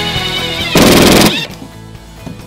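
Background rock music. About three-quarters of a second in, a cordless impact driver gives a brief, loud, rapid rattle of about half a second, driving a screw into the wall panel.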